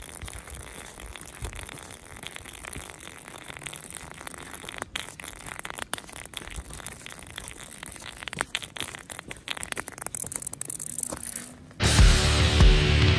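Garmin Instinct watch dragged on a cord across rough asphalt: a continuous grainy scraping with frequent sharp clicks and knocks. Loud guitar music cuts in just before the end.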